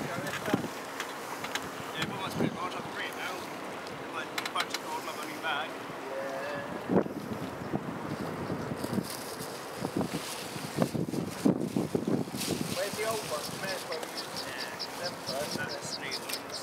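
Wind buffeting the microphone, with indistinct voices of people talking nearby off and on. A rapid high ticking starts near the end.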